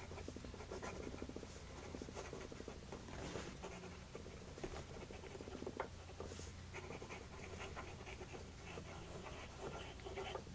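Lamy 2000 fountain pen's medium gold nib writing quickly in cursive on paper: a faint, continuous run of fine strokes and loops. It is the light audible feedback of a nib that "sings a bit", not scratchy.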